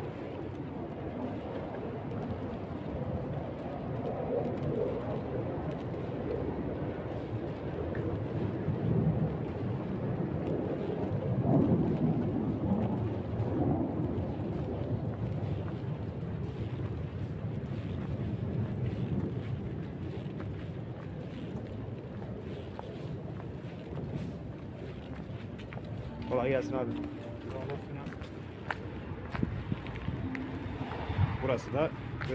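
Outdoor walking ambience: a steady low rumble of wind and handling on the microphone, with faint voices in the background and a short voice near the end.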